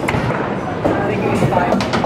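Busy bowling alley din: background voices with scattered knocks and clatter of balls and pins, a sharp knock near the end.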